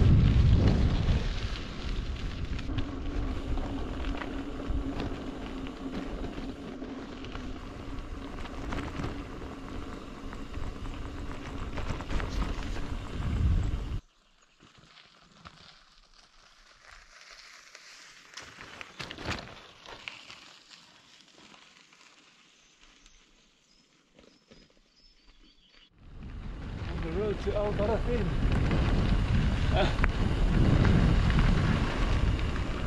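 Wind buffeting the microphone of a camera on a moving bicycle, with the rumble of tyres on a dirt track, for about the first half. It then cuts to a much quieter stretch with a few faint knocks, and the wind noise comes back near the end.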